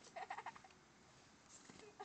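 A short, high-pitched, pulsing vocal cry in the first half-second, then a quiet stretch.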